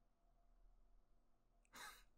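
Near silence, then a short, sharp intake of breath near the end.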